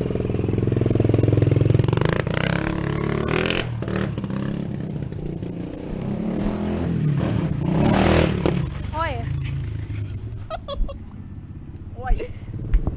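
ProTork TR100F mini dirt bike's small engine running close by, loudest in the first two seconds, its pitch rising and falling as the throttle changes. It fades lower near the end.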